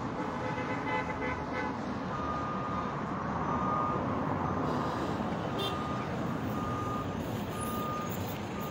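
Steady street traffic noise, with a vehicle's reversing alarm beeping at one steady pitch from about two seconds in, the beeps coming a little under twice a second.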